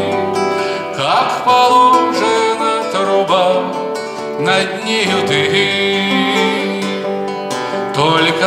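A man singing a Russian bard song, accompanying himself on a classical guitar.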